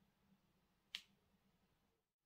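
Near silence, broken once about a second in by a single short, sharp click.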